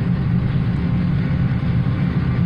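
Steady low rumble of a long double-stack container freight train rolling past at a distance, heard from inside a vehicle's cab.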